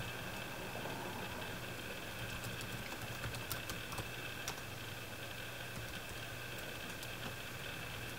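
Light typing on a laptop keyboard: scattered soft key clicks, most of them between about two and five seconds in, over a steady faint hum.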